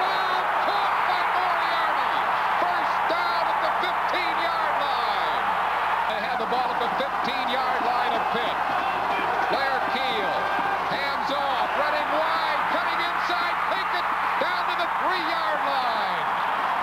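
Stadium crowd noise at a college football game: many voices cheering and shouting at once, holding steady throughout.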